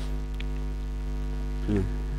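Steady electrical mains hum: a low, even buzz with a stack of overtones that does not change.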